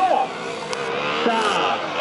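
KTM 125 Duke's single-cylinder engine revving, rising in pitch, as the rider lifts the front wheel into a wheelie.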